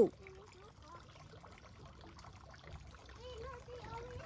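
Faint, distant children's voices over a low steady outdoor hiss, with a longer held vocal sound near the end.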